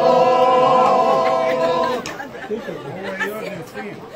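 Men singing unaccompanied, holding a long final note that breaks off about two seconds in, followed by people talking.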